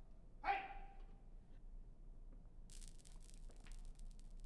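A single short, high-pitched cry about half a second in, like a yelp. Near the end, Skittles clatter and tick as they scatter and bounce across a hard polished concrete floor.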